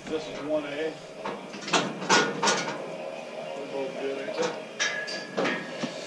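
Muffled voices in the background, too indistinct to make out, with several sharp knocks and clatters between them and a short high squeak near the end.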